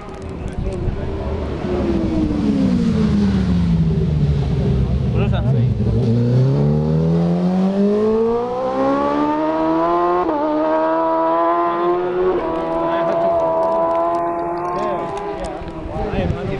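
Isle of Man TT racing motorcycle engine: its pitch falls for about five seconds as the bike slows for the bend, then climbs as it accelerates away, with two quick upshifts, the pitch dipping briefly a little after ten and twelve seconds in, before it fades.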